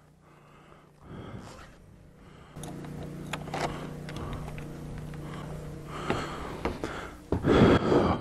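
Clicks and knocks from a static caravan's door handle and lock as the door is unlocked and opened, over a steady low hum. A louder burst of sound comes in near the end.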